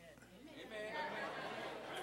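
Congregation calling out "amen" in response to a sermon, several voices overlapping, fainter than the preacher's miked voice.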